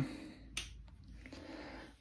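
A sharp click about half a second in, then a fainter tick: the rear power switch of a Line 6 Helix floor multi-effects unit being flipped on.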